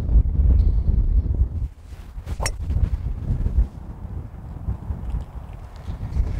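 A golf driver strikes a ball off the tee: a single sharp click about two and a half seconds in, over wind rumbling on the microphone.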